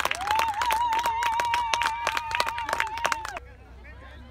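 Sideline spectators clapping rapidly while one person holds a long, high cheer for a shot on goal, both stopping about three and a half seconds in; faint crowd chatter follows.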